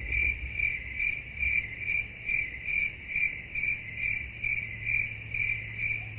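Stock cricket-chirp sound effect: an even, high chirp pulsing about two to three times a second over a low steady hum, used as the 'awkward silence' gag.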